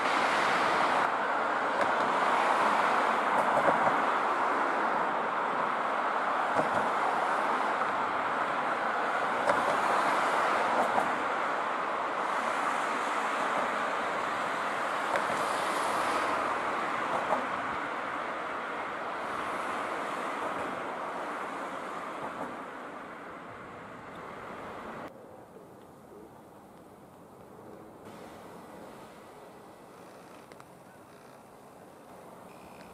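Tobu 10000-series electric train rolling slowly along the track: a steady running and rail noise that slowly fades and then drops off sharply about 25 seconds in.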